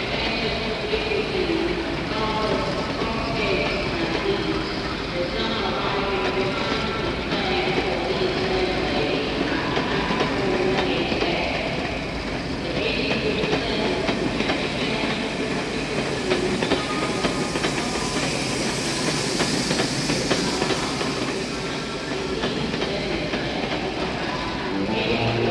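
Recorded train running on the rails: a steady rumble with wheels clattering on the track and wavering tones above it. It serves as the sound-effect intro to a sludge-metal track, with no instruments playing yet.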